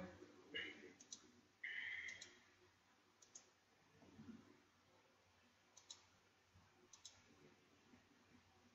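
Faint computer mouse clicks, a few scattered over several seconds, with a brief hiss about two seconds in; otherwise near silence.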